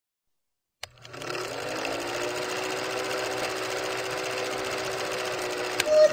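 Film-projector sound effect under a countdown leader: a steady mechanical whirr that starts with a click just under a second in and settles quickly to an even pitch. A short beep sounds right at the end.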